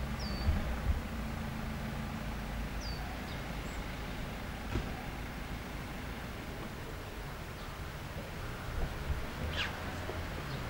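Outdoor ambience with a steady low rumble and a few short, high, falling bird chirps: two in the first three seconds and a longer one near the end. There are also a couple of soft thumps about half a second in.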